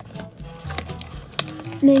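A few light clicks and crinkles of a cardboard box insert and thin plastic packaging being handled, over soft background music.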